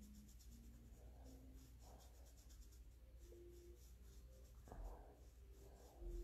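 Near silence: the soft brushing of a makeup brush on the face, with a few faint single held notes of an instrument being played elsewhere, stepping up in pitch over the first two seconds and recurring later.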